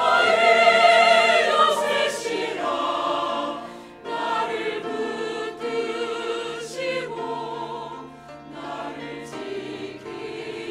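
Mixed church choir of men and women singing a Korean sacred anthem with full, sustained vowels and vibrato. The sound drops briefly between phrases about four seconds in and again near eight seconds.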